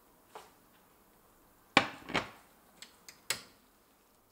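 A ceramic plate set down on a glass-ceramic cooktop: a sharp clack about two seconds in, then a second knock, a couple of light clicks and one more knock.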